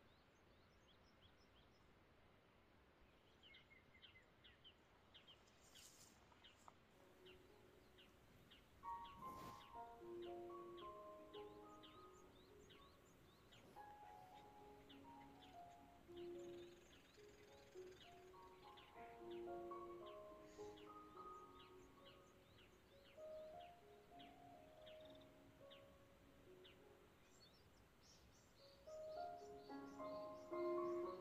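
Faint bird chirping, short high calls repeated over and over, and then about nine seconds in a soft, slow melody of held notes comes in and plays through.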